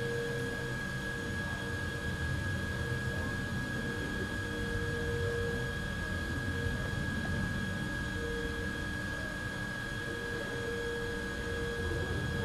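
Intermac Master CNC machine running: a steady high-pitched whine, with a lower hum that comes and goes every second or two, over a low mechanical rumble.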